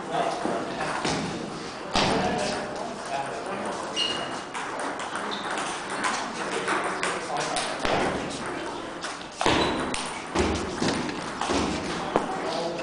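Table tennis balls clicking off paddles and tables at irregular intervals, with a few louder knocks, over steady background chatter in the hall.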